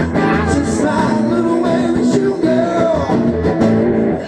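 Live acoustic blues from two guitars: a strummed acoustic guitar with a lead guitar playing fills with bending notes, heard through a PA.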